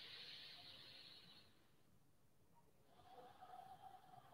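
Near silence with faint breathing through the nose: one soft breath fades out about a second and a half in, and another begins about three seconds in.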